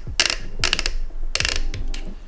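Rapid mechanical clicking and ratcheting from a DJI RS2 gimbal's locks and mounting parts being worked by hand, in four short clusters.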